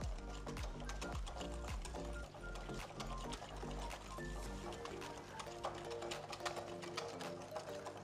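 A wire whisk beats a wet yogurt mixture in a glass bowl, its wires clicking rapidly against the glass, over background music with held notes.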